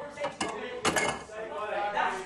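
Cutlery and crockery clinking and clattering at a kitchen counter, with two sharp clatters about half a second and a second in.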